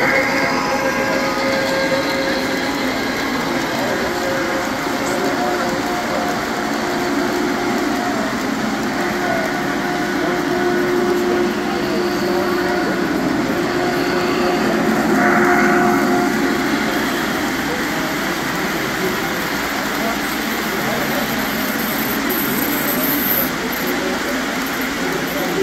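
Three-rail O gauge model trains running on the layout: a steady rumble of wheels on the track, with long, held whistle tones from a locomotive's onboard sound system through the middle.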